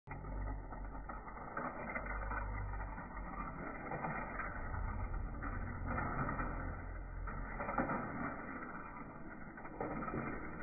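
Small battery-powered toy car running along a plastic loop track, its motor whirring and wheels rattling over the track, with a low rumble underneath that swells and fades.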